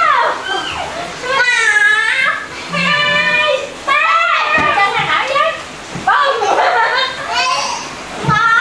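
Young children's high-pitched voices shrieking and laughing at play, in several bursts with short breaks.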